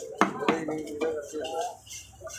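Knife blade striking a large spotted grouper held on a wooden chopping block: two sharp strokes in quick succession early on, part of a steady rhythm of strokes as the fish is scaled and cut.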